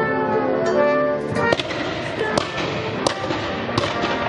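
Military brass band of trombones and trumpets playing held chords, broken after a little over a second by a series of four sharp bangs spaced roughly a second apart.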